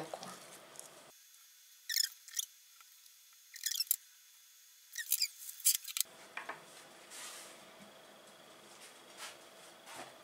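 A few short, faint scrapes of a knife and boiled chicken breast against a ceramic plate as the meat is pulled apart and laid out in pieces, in four brief clusters in the first six seconds.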